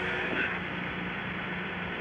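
Steady hiss with a low, even hum, the background noise of an old archival onboard audio track, in a gap between crew voices.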